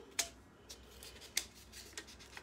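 Faint handling of transfer sheets during crafting: a few short, crisp clicks or snips, spaced irregularly, over low room hum.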